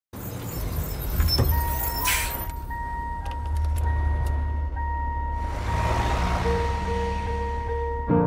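Car sounds ahead of the music: a steady low engine rumble with a few sharp clicks and a steady dashboard warning tone. A broad rush of noise, like a car passing, swells about five and a half seconds in.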